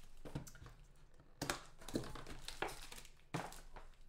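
Plastic card-pack wrapping crinkling and trading cards being handled, in several short rustles.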